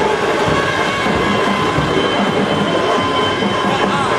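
Loud procession music: a sustained, high, multi-note wind-instrument tone held steady over irregular drum beats.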